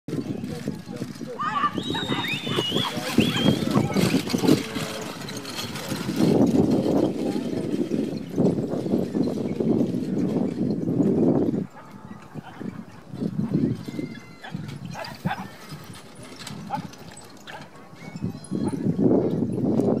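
Gusty wind rumbling on the microphone, rising and falling in surges and dropping away suddenly about halfway through, with indistinct voices in the background.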